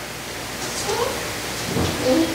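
Rustling, rumbling noise with short streaks of scraping, over the faint voice of someone speaking away from the microphone. There is a low thump near the end.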